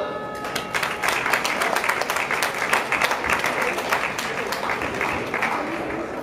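Spectators clapping after the boxing ring's bell ends the final round. The clapping starts about half a second in and dies away near the end, with the bell's ring still fading in the first second.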